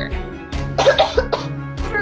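A person coughing, a quick run of several coughs about half a second in, over background music with a low repeating beat.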